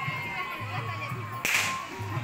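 A single sharp crack about one and a half seconds in, trailing off in a short hiss, over background music and crowd noise.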